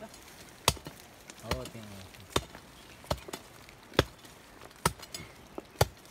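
Woody brush being chopped or broken through: a run of sharp, dry strikes about one a second, with a short voice call among them.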